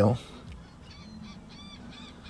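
Faint birds calling: a few short, arched calls in quick succession from about a second in, over a faint low steady hum.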